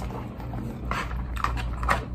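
Eating sounds: a few short bursts of chewing and plastic forks against plastic takeout trays, over a steady low hum.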